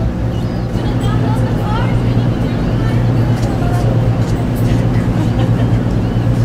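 Steady low drone of the ferry Coho's engines heard from the deck, with faint voices above it.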